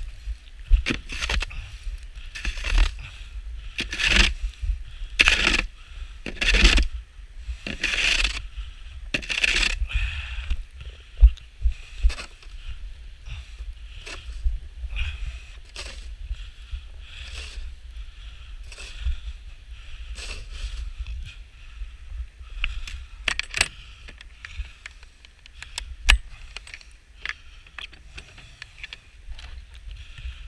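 Snow shovel scooping and pushing powdery snow in short, repeated strokes about every second or so, busy at first and sparser later, with a couple of sharp knocks near the end. Wind rumbles on the microphone.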